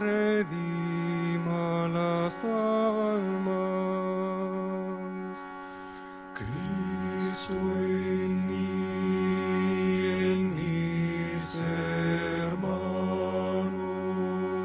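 Male voices chanting a slow devotional chant in unison, each note held long before stepping to the next. The chant softens about five seconds in, then picks up again with a steady low tone underneath.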